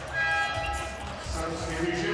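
Basketball game sound: a ball dribbling on a hardwood court under steady background music with long held tones.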